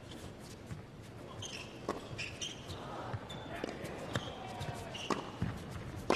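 Doubles tennis rally on an indoor hard court: a few sharp racquet-on-ball strikes and short, high sneaker squeaks on the court surface, in a large echoing hall.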